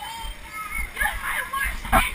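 Children's high voices shouting and chattering inside an inflatable bouncy castle, over irregular low thuds of bouncing on the vinyl. Right at the end a sharp, loud knock as the helmet camera bumps into the inflatable wall.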